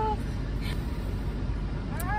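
Steady low rumble inside a car cabin, with no pitch or rhythm to it.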